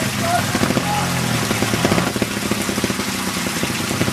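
Trials motorcycle engine running and revving unevenly as the bike climbs over rocks.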